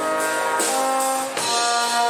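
Brass band of trumpets, trombone, baritone horn and tubas playing with a drum kit: held brass chords that change about half a second in and again near the end, with cymbals ringing underneath.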